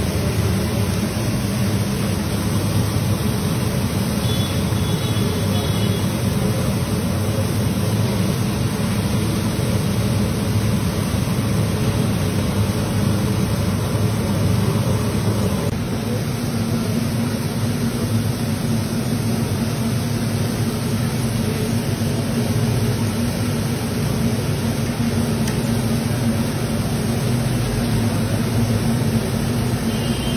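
A steady, loud low rumble with a hiss above it, running on without a break.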